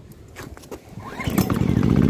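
Small petrol engine of a 2 kVA digital inverter generator starting: a few faint clicks, a short rising sound just after a second in, then the engine catches and runs steadily and loudly.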